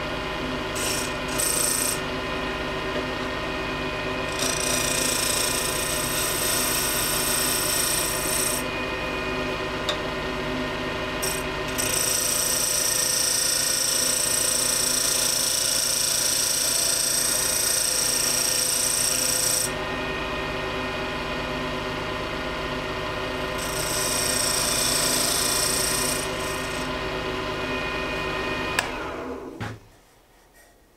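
Wood lathe motor running with a steady hum while a hand-held turning tool cuts into a spinning hardwood duck-call blank, the hiss of the cut coming in several passes of a few seconds each. Near the end the lathe is switched off and the sound dies away.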